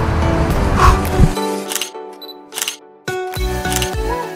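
Upbeat background music that drops away about a second in and comes back about three seconds in, with several sharp camera shutter clicks in and around the gap.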